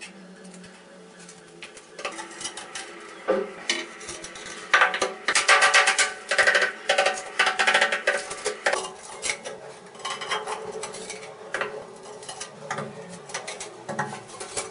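Ceramic wall tiles and hand tools clinking and scraping against the tiled wall, with a dense run of clicks and scrapes in the middle.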